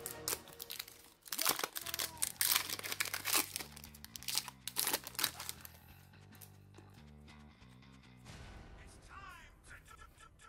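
Foil booster-pack wrapper being torn open and crinkled: a dense run of sharp crackles through the first half. Quiet background music with a low bass line plays underneath.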